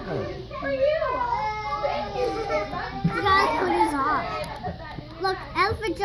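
Young children's voices chattering, several overlapping at once.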